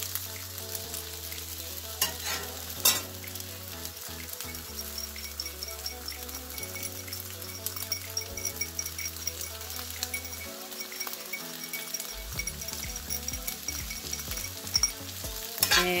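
Fried rice sizzling in a hot cast-iron skillet as sauce is poured in and stirred through with a metal spatula. A couple of sharp scrapes or clinks of the spatula against the pan come about two and three seconds in.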